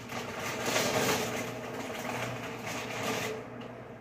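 Handling of grocery meat packaging: about three and a half seconds of rustling and scraping, loudest about a second in, over a steady low hum.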